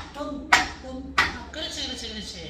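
Two sharp stick hits about two-thirds of a second apart, from a nanta drumming group, with faint voices between them.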